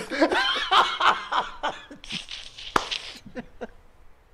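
Men laughing, the laughter strongest in the first two seconds and then trailing off into shorter chuckles, with one sharp click near three seconds in.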